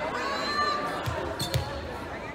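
A volleyball bounced on the hardwood gym floor, two thumps about a second in and half a second apart, ringing in the large hall over crowd chatter.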